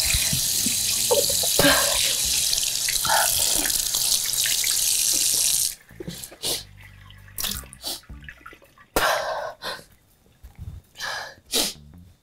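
A water tap running steadily, then shut off abruptly about six seconds in, followed by a string of about six harsh retching and coughing noises from a person.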